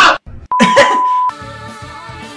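A loud cartoon voice cuts off, then a steady censor bleep tone sounds for under a second about half a second in, over more voice. Background music with several held notes follows.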